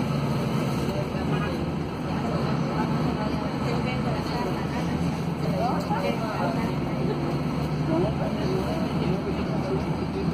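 Mercedes-Benz OC500LE city bus with an OM936LA six-cylinder diesel, its engine and drivetrain droning steadily as heard inside the passenger cabin while the bus drives, with indistinct passenger voices over it.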